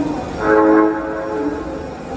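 Osaka Metro 21 series subway train sounding its horn once, a short blast of a little over half a second, as it pulls out of the platform, over the steady rumble of the train.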